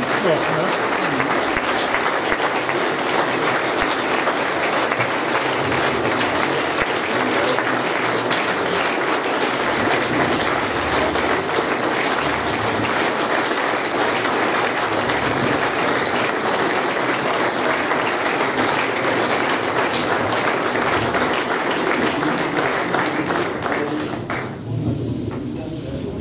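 Long, steady applause from a large standing audience in a hall, a standing ovation after a speech; it eases off right at the end.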